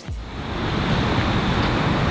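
Steady rushing of a fast-flowing river and nearby waterfall.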